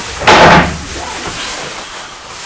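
A single sudden loud bang about a quarter second in, lasting under half a second.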